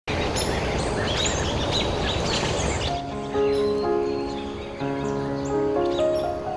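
Birds chirping over a steady hiss of outdoor ambience; about three seconds in, soft music with long held notes comes in under the bird calls.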